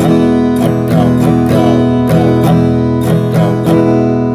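Acoustic guitar strumming one held chord in a down-down-up, up-down-up pattern, in even, steady strokes.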